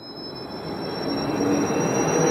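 A sound-effect riser for a logo animation: a noisy whoosh that swells steadily louder, with a thin high whistle-like tone gliding slowly upward through it.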